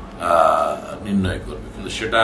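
A man speaking in Bengali, opening with a drawn-out vowel, like a hesitation sound, before carrying on talking.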